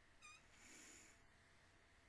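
Near silence, with a faint brief high squeak followed by a soft breath out through the nose.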